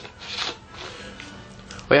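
Rubbing and handling noise from a hand gripping a plastic soda bottle, with a brief scrape about half a second in.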